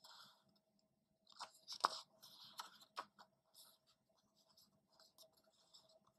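Pages of a paperback picture book being turned by hand: quiet paper rustles and small clicks, loudest about two seconds in, then trailing off into fainter handling sounds.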